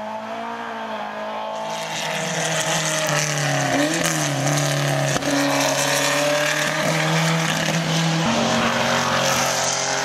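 Engines of historic racing cars running at speed on the circuit, growing louder about two seconds in and staying loud. The engine pitch dips and climbs again near the middle and steps up near the end.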